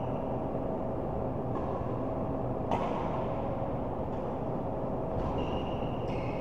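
Steady background noise of an indoor badminton hall, with one sharp hit about halfway through, a racket striking the shuttlecock, and a brief high shoe squeak on the court near the end.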